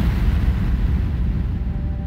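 The low rumbling tail of electronic dance music on a club sound system, with faint held tones, fading slowly with no beat left.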